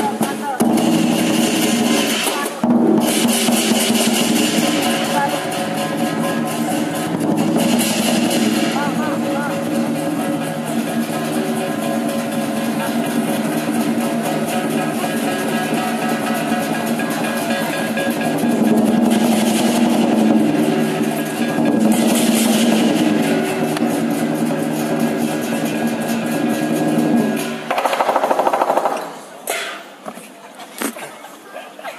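Lion dance percussion: a big drum beating rapidly with clashing cymbals and a ringing gong, with brighter cymbal surges a few times. The playing breaks off just before the end.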